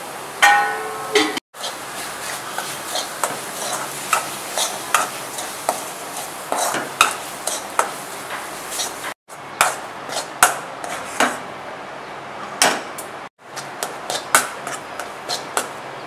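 Steel spoon stirring and scraping a spiced grated cauliflower mixture frying in a metal kadai: repeated clicks and scrapes of metal on metal over a steady sizzle. The sound drops out briefly three times.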